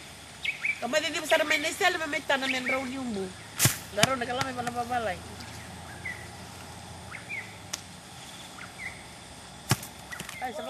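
A person's voice in two stretches with no clear words, a single sharp knock just before four seconds in, and a few short bird chirps in the second half, over steady outdoor background noise.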